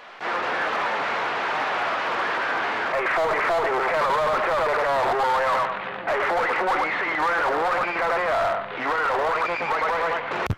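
A distant station's voice coming in over a CB radio receiver through steady hiss and static, thin and hard to make out. The hiss comes up just after the start and the voice begins about three seconds in.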